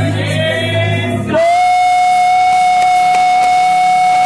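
A man singing gospel through a microphone and PA, holding one long high note from about a second and a half in.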